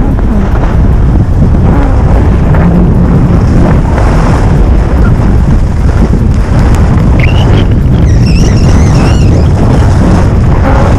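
Wind buffeting a GoPro Hero 5's microphone during a fast ski descent: a loud, steady, deep rumble with the hiss of skis running over the snow. Faint wavering high tones come through in the last three seconds.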